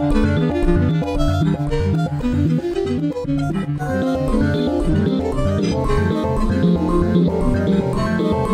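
Electronic jazz groove: a saxophone processed live through electronics, playing short pitched phrases over a rhythmic, plucked-sounding synthesized bass line and beat.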